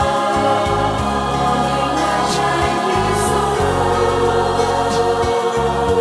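Recorded Vietnamese ballad: a slow accompaniment of long held chords over a bass line that changes notes every second or so, with singing.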